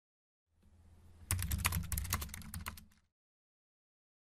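Computer keyboard typing sound effect: about a dozen quick key clicks over a second and a half, over a faint low hum, all stopping about three seconds in.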